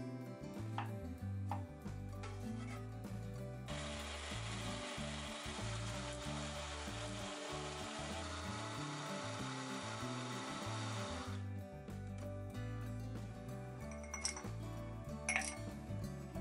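Countertop blender running for about seven seconds, pureeing watermelon chunks into juice; it starts about four seconds in and cuts off suddenly. Before it come light knife clicks on a wooden cutting board, with soft background music throughout.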